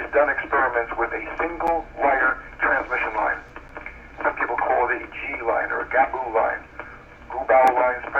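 Speech only: one voice talking, heard through a narrow-band, telephone-like recording with a faint low hum beneath.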